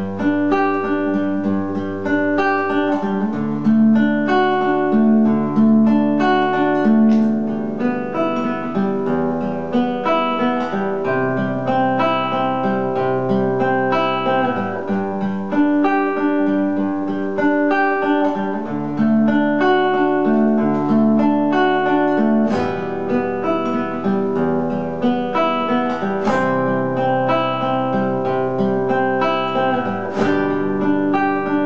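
Nylon-string classical guitar fingerpicked, playing a melody over a steady bass line. Several guitar parts sound at once, typical of layers recorded and played back on a looper pedal.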